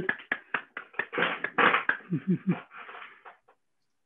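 A person laughing over a video call: a run of short breathy bursts with a few voiced notes, dying away after about three and a half seconds.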